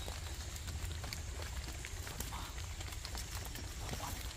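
Scattered small clicks and rustles of leaves and stems as turkey berry plants are handled during picking, over a steady low rumble.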